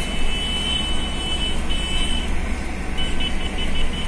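Steady engine and tyre road noise of a car being driven, heard from on board. A thin high tone runs over it, breaks off about two seconds in, and comes back near the end as quick repeated beeps.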